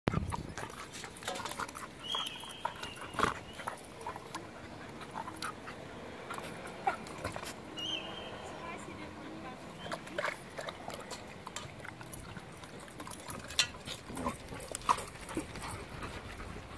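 Two dogs play-wrestling and then panting after their play, with scattered short clicks and scuffs from their mouths and paws.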